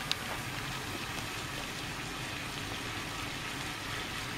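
A saucepan of water at a rolling boil on a gas burner, bubbling steadily.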